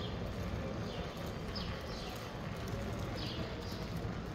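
Street ambience with footsteps on pavement and birds chirping. The chirps are short, falling notes repeated a few times a second.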